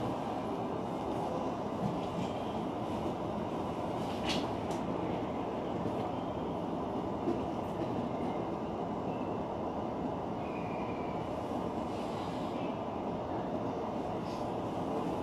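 E233 series electric commuter train running noise heard inside the leading car, a steady rumble as it rolls along the platform into the station, with a single sharp click about four seconds in.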